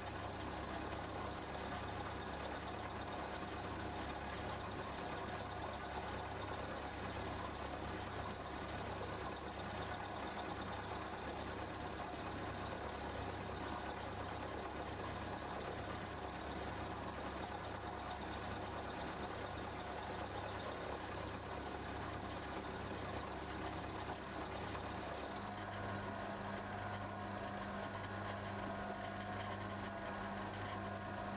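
Milling machine running, its cutter cutting into a metal block in a machine vice while the table is fed by handwheel: a steady motor hum with cutting noise. The low hum changes pitch near the end.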